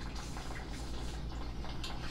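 Glass water bong bubbling steadily as a hit is drawn through it.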